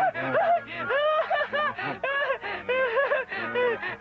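A cartoon character's voice laughing uncontrollably in a long run of quick, pitched laughs, several a second.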